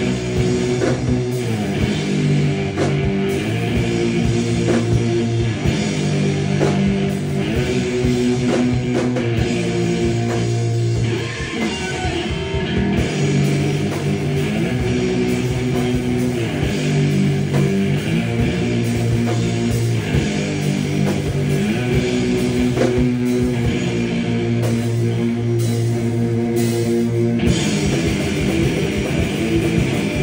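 Live heavy rock played by electric guitar and drum kit, a distorted guitar riff repeating over the drums with no vocals. The band eases off briefly about eleven seconds in, then the riff returns.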